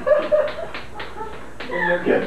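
Chalk tapping and scraping on a chalkboard as words are written, in a handful of quick strokes. Brief snippets of laughter and voice come in between, strongest near the end.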